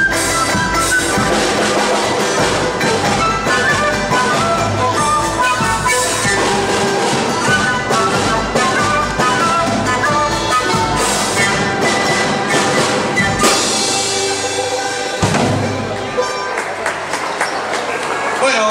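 Andean folk ensemble playing live: panpipes and a wooden flute carry the melody over strummed strings and percussion. The piece ends about fifteen seconds in and applause begins.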